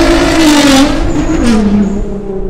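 Straight-piped Nissan GT-R R35's twin-turbo V6 accelerating away, its exhaust note dropping in pitch about one and a half seconds in and fading as the car recedes.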